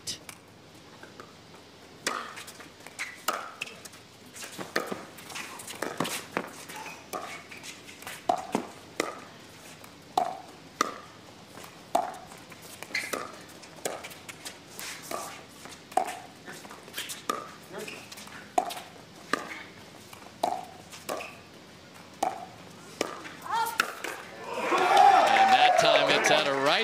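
Pickleball paddles hitting the plastic ball back and forth in a long rally, a short hollow pop roughly every second. Voices start up near the end.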